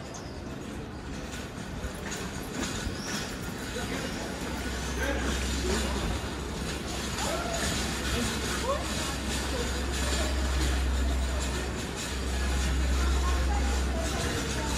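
Street ambience of passers-by talking, with a steady low rumble that sets in about four seconds in and briefly drops out near the end.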